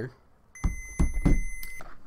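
Digital multimeter's continuity beeper giving one steady high beep of a little over a second, the signal that the probes meet a closed, conducting path, with a few clicks and low thumps around it.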